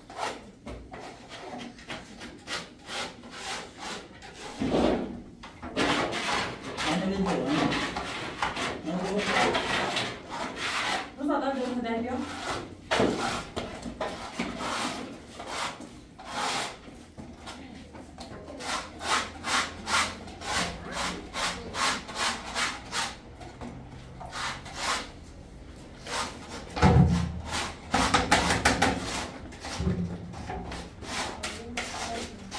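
Hand scrapers and trowels scraping plaster on a wall and in a mixing bowl in quick, repeated strokes. A heavy thump comes about three seconds before the end.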